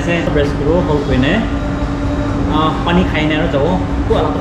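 Indistinct talking in short bursts over a steady low hum.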